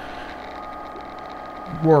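A steady mechanical hum that holds an even pitch, with a voice starting near the end.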